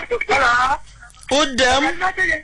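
Speech only: a person talking over a telephone line.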